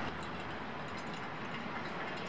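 A thin stream of hot water pouring steadily onto coffee grounds in a paper filter in a pour-over dripper, an even trickling hiss.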